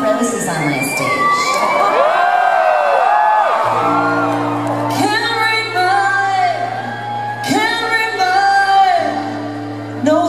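Live keyboard-and-voice performance: a woman sings long wordless held and gliding notes over sustained keyboard chords that change every couple of seconds, with whoops from the crowd in a large hall.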